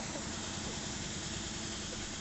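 Steady engine noise of an idling vehicle, a constant low rumble under an even hiss.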